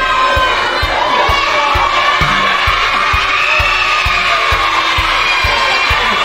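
A crowd of children cheering and shouting over music with a steady beat of about two thumps a second.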